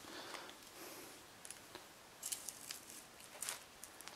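Scissor-style PEX cutter working on a PEX pipe, giving a few faint scattered clicks and crunches.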